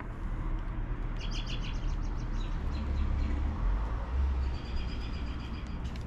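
Small birds chirping in quick repeated runs, twice, over a steady low rumble.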